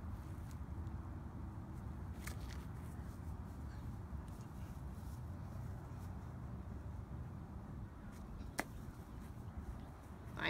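A single sharp tap near the end, a toy golf club striking a ball, over a steady low outdoor rumble, with a few faint clicks a couple of seconds in.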